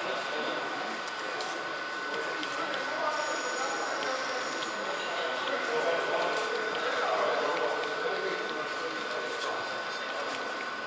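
Indistinct chatter of people echoing in a large hall, over the running noise of an H0 model train, with a thin steady whine throughout.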